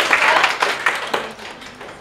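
Audience applauding, the clapping thinning out and fading away over the second half.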